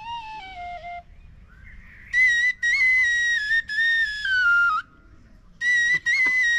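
Azerbaijani tütək, a wooden shepherd's pipe, played solo. A short phrase falls away in the low register, then after a brief pause with a breath the tune jumps to a high register and steps downward. It breaks off for a moment and starts up again high near the end.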